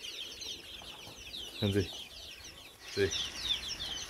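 Many small birds chirping and peeping together in a dense, continuous high chatter, with a couple of short voiced sounds over it.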